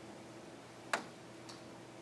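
Quiet room tone with a faint steady hum, broken by one sharp click about halfway through and a fainter tick about half a second later.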